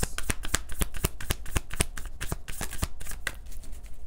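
A tarot deck being shuffled by hand before a card is drawn: a rapid run of crisp card clicks and snaps that thins out shortly before the end.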